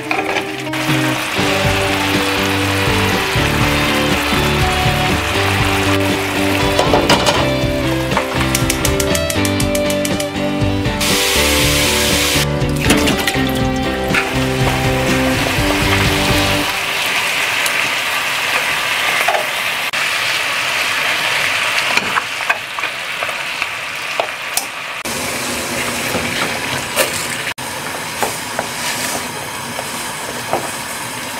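Marinated beef short ribs sizzling in a frying pan, with scattered clicks as metal tongs turn them. Background music plays over the sizzling and stops about halfway through.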